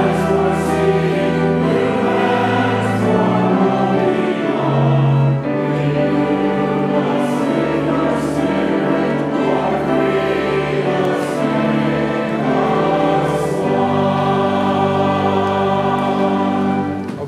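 Church choir singing a hymn: sustained chords over a steady low bass line, with the pitch moving from note to note throughout.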